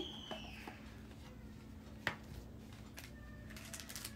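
Faint handling of a cardboard One Chip Challenge box as it is opened: a sharp click about two seconds in, then a few lighter clicks near the end as the foil chip packet comes out.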